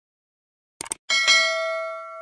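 Subscribe-button animation sound effect: a quick double mouse click, then just after a second in a bell ding, struck twice, its tones ringing on and fading slowly.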